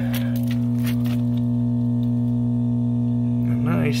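Steady low electrical hum at mains frequency, rich in overtones, from the aerobic septic system's powered equipment at the open control box.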